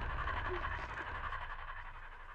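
A person's heavy, breathy panting, fading away over the two seconds.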